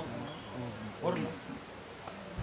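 Steady high-pitched buzzing of insects, with a man's short spoken sound about a second in.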